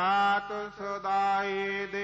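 Gurbani kirtan: a male voice singing long held notes over a steady harmonium drone, with a short break between two notes.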